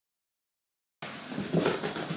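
Silence for the first second, then a dog close to the microphone, moving about and breathing in a quick series of short sounds that grows loudest near the end.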